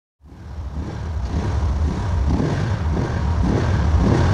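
Motorcycle engine rumbling low, fading in from silence and growing steadily louder.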